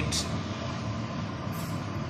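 Steady background noise with a faint hum, with a brief hiss just at the start.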